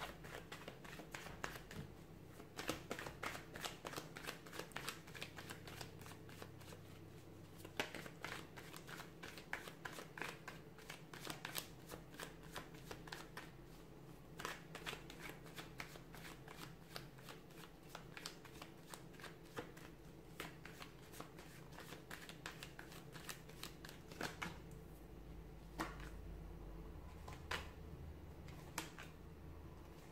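A deck of tarot cards being shuffled by hand: a steady run of light card clicks and slaps.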